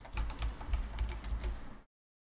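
Computer keyboard typing: a quick run of keystrokes that cuts off suddenly near the end.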